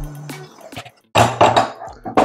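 Background music fades out about halfway through. Then, near the end, there is a sudden loud clatter lasting under a second.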